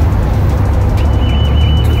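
Steady low rumble of idling car engines in a busy car park, mixed with music, and a thin steady high-pitched tone that comes in about a second in.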